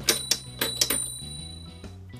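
Twist-operated toy alarm bell on a Fireman Sam Pontypandy Rescue playset fire station, ringing as its knob is turned: several quick dings in the first second, then a fading metallic ring. Background music plays under it.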